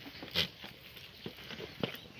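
A herd of black goats moving and feeding on cut branches on stony ground: a few short sharp snaps and taps, the loudest about half a second in and another near the end.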